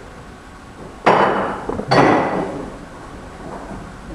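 Two sharp knocks about a second apart, each ringing on briefly as it fades.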